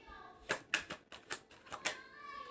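Tarot cards being handled and pulled from the deck: a quick, irregular run of about seven or eight sharp clicks and snaps.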